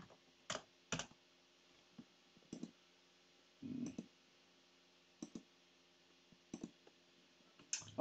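Scattered clicks from a computer keyboard and mouse, a handful of short, sharp, isolated clicks spaced out over several seconds, with one brief muffled sound just before the middle.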